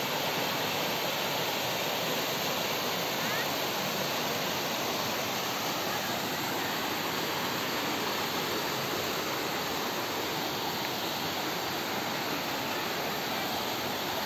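Waterfall and the shallow rocky stream below it, water rushing steadily.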